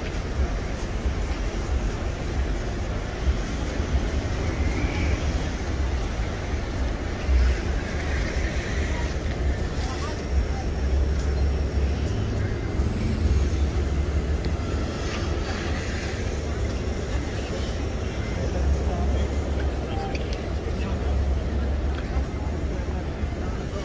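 Busy city street ambience: chatter of passing pedestrians and traffic, over a steady low rumble.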